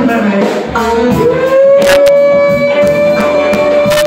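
Live blues band with a harmonica played through a cupped microphone: about a second in, the harmonica bends up into one long held note that stands out above the band. Upright bass, guitar, keys and drums play along.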